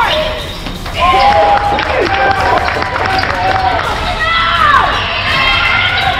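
Basketball game on a hardwood gym floor: sneakers squeaking in short chirps that slide up and down in pitch, the ball bouncing, and voices calling out across the gym.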